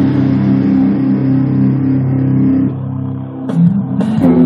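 Electric guitar chord held and ringing, dropping away about two and a half seconds in, then a fresh pick attack just before the end.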